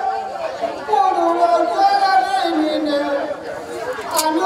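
Devotional recitation through a microphone and loudspeaker, a voice moving in long, gliding notes.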